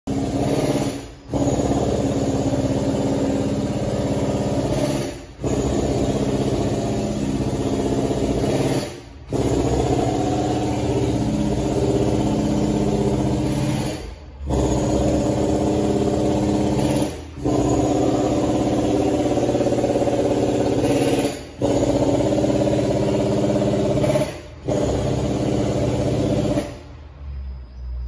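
Loud engine-like mechanical noise, a steady hum of several tones, that breaks off briefly about every three to four seconds.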